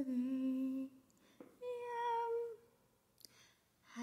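A woman humming two held notes, the second higher than the first, with a faint click between them.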